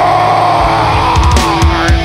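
Hardcore punk band playing live, loud, with distorted guitar, bass and drums under a held shouted vocal. The low end drops out at the start, and the full band comes back in about half a second later.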